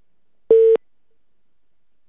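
A single short telephone-line beep, about a quarter of a second long, half a second in: the phone call has been cut off.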